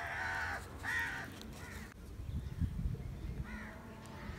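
Crow cawing: three harsh calls in the first second and a half, and one more near the end. Low muffled thumps sound in between.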